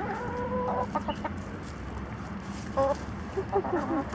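Hens clucking and calling: one drawn-out call at the start, then short clucks scattered through, with a few quick falling notes near the end.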